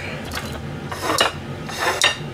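Ceramic dishes scraping and rubbing on a stainless-steel kitchen counter while food is being plated, with two rasping scrapes about a second in and near the end.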